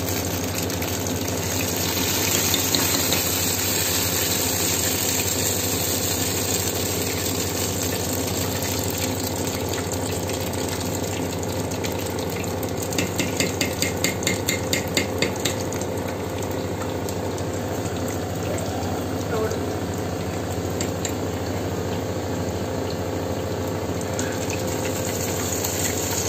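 Urad and moong dal batter fritters deep-frying in a kadhai of hot oil: a steady sizzle. About halfway through comes a quick run of clicks, roughly three or four a second, for a couple of seconds.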